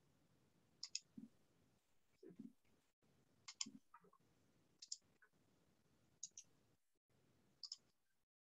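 Near silence broken by faint, short clicks, about six of them, spaced roughly every second and a half.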